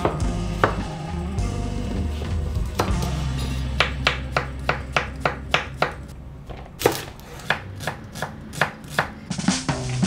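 A chef's knife chops a cucumber on a wooden cutting board. From about four seconds in, there is a quick run of sharp knife strikes on the board, about three a second, with a short pause partway through.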